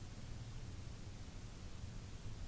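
Pure stock race cars circling slowly under caution, heard as a steady low engine rumble under a background hiss.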